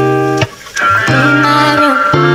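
A rap track playing: long held notes over a steady bass, cutting out briefly about half a second in before coming back.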